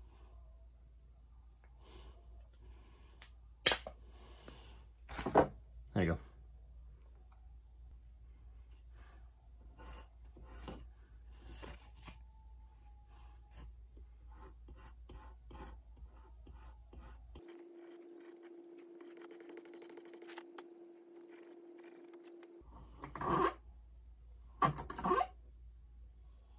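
Hand cutters snip a small piece of silver stock with one sharp click, followed by a couple of duller knocks. Then come many light scratching strokes of the small pieces being worked by hand on sandpaper and with a file. A steady hum runs for several seconds past the middle, and a few louder knocks come near the end.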